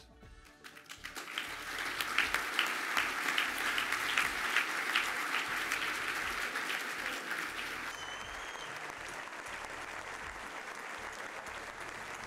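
Audience applauding: many hands clapping, swelling about a second in and easing a little after about eight seconds.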